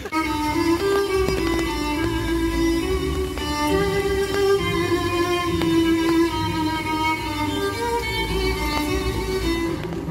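Recorded violin music, a bowed melody over a lower string accompaniment, playing from an interactive peephole display that shows a ghostly hand bowing a violin.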